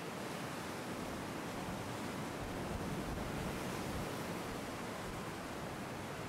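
Steady, even rushing of wind and sea surf, a constant coastal ambience without distinct events.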